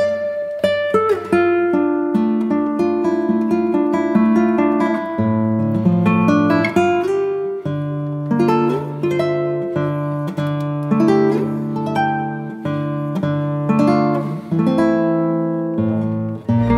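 Background music: plucked acoustic guitar playing a melody over chords.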